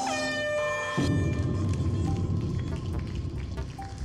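A game-show start signal: an electronic tone that swoops down and holds for about a second. Then background music sets in, along with a rapid run of light clicks and clatters as plastic cups are set down one after another in stacks.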